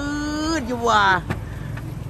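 A man's drawn-out exclamations of amazement, then a short click a little past halfway.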